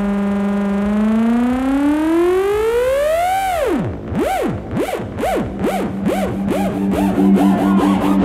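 Psytrance music: a distorted synth lead holds a note, slides up in pitch to a peak about three and a half seconds in, then swoops up and down in faster and faster sweeps. High ticks come closer and closer together over it, and a pulsing two-note chord comes in about five seconds in.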